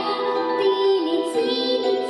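A young girl singing a melody into a microphone over instrumental accompaniment.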